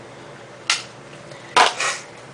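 Two brief handling sounds: a short knock about a third of the way in and a longer rustle near the end, as a makeup compact is set down and a bag of samples is searched.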